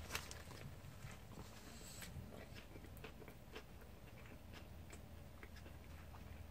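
A person biting into a Popeyes fried chicken sandwich, with a faint crunch right at the start, then chewing quietly with scattered small crunches.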